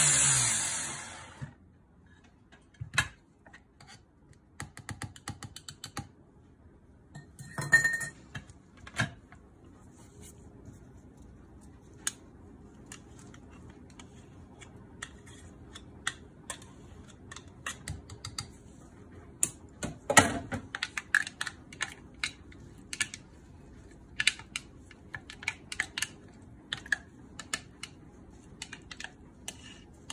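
An electric hand blender's chopper attachment is switched off and its motor winds down over the first second or so with a falling hum. After that come scattered sharp plastic clicks and knocks as the chopper lid comes off and a spatula scrapes the pulp inside the plastic bowl.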